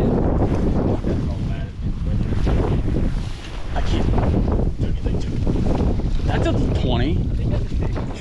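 Wind buffeting the microphone: a loud, steady low rumble with gusts, over water splashing as a trout is netted.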